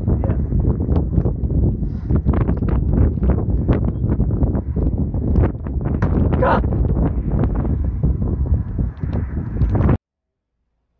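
Strong wind buffeting the microphone in irregular gusts, a loud low rumble throughout.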